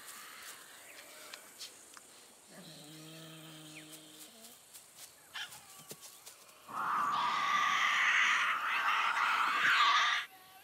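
Tasmanian devils calling: a low, steady growl about two and a half seconds in lasting under two seconds, then from about seven seconds a loud, harsh, sustained screech, the kind devils make when they confront each other.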